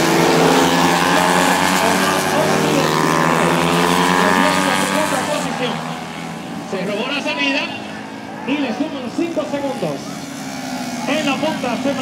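Several 70 cc street-class racing motorcycles passing close at speed, their engines revving high at several pitches at once. The engine sound drops away after about five seconds, leaving fainter engines under voices.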